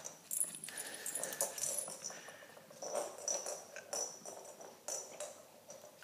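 Rustling and crinkling of toys and packaging being handled in a cardboard box, in scattered short bursts.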